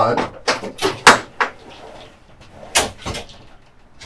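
Sliding glass shower doors of a three-panel slide being moved along their track, with several sharp knocks as the panels reach their stops, the loudest about a second in and two more near the end.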